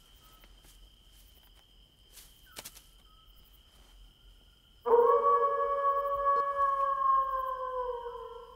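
A wolf howling: one long howl begins abruptly about five seconds in, holding its pitch and then sagging slowly downward as it fades.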